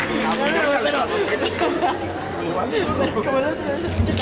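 Several people talking at once close to the microphone, overlapping chatter with no music, over a steady low hum.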